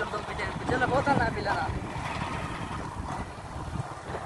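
Small motorcycle running along a road, its engine under a steady rush of wind on the microphone, with a voice briefly in the first half.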